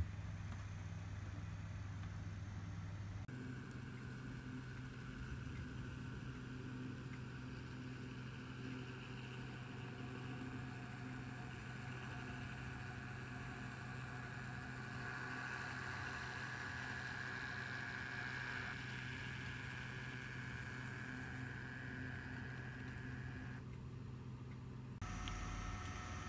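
Model railway locomotives running on the layout's track: a steady low hum with a higher, even motor whine over it. The sound shifts at the cuts between trains, about three seconds in and again near the end.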